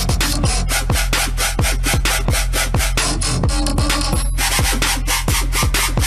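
Electronic dance music from a DJ set at full drop: a kick drum hits on a fast, steady beat over a sustained deep bass, with a brief break in the upper layers about four seconds in.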